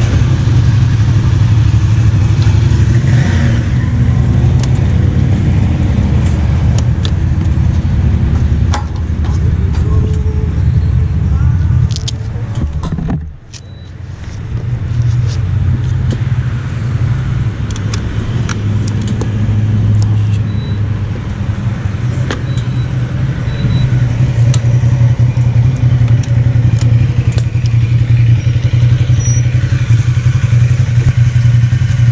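Motorcycle engines idling and running at low speed, a steady low rumble. It drops away sharply about 13 seconds in, then builds back up, with scattered light clicks over it.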